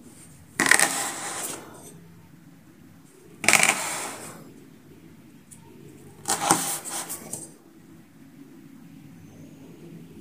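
A plastic cup used as a round cutter pressed down through rolled scone dough onto the tabletop three times, each a sudden noisy knock that fades over about a second.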